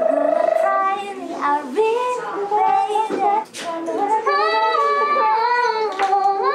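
Young women's voices singing a wordless, wailing melody: a wavering held note at the start, then gliding notes, with more than one voice together in the second half.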